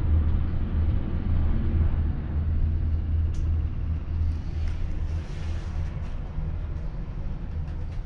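Steady low rumble inside a moving Sarajevo cable car gondola during the ride, with a couple of faint clicks a few seconds in.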